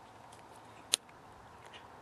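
A single short, sharp plastic click about a second in, as the wiring connector is pulled off the door-jamb dome light switch, over a faint steady hiss.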